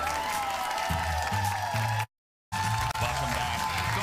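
Studio audience applauding over an upbeat music bumper with a steady bass line. The sound drops out completely for about half a second just after two seconds in, then the applause and music resume.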